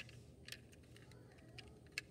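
A few faint, sharp clicks and taps as a plastic HO-scale model caboose is handled and turned over in the hand.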